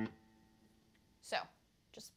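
A single low note on an electric guitar with Fishman Fluence pickups, the open A string plucked just before, ringing on and fading over the first second. About a second and a half in comes a brief voice sound.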